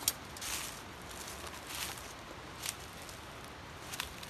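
A few faint crackles and crunches of dry leaves and twigs underfoot, scattered over a steady low outdoor hiss.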